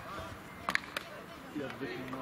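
Two sharp clacks of field hockey sticks striking the ball, about a quarter second apart, a little under a second in, over faint shouting from the players.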